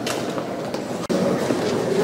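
Footsteps of a group walking on a hard indoor floor, clicking irregularly over a steady background din. The sound cuts off abruptly about a second in, and the din comes back louder.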